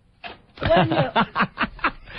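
A man laughing in a run of short, quick chuckles that start about half a second in.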